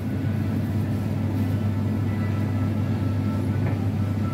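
Steady low hum of supermarket refrigeration, with faint background music over it.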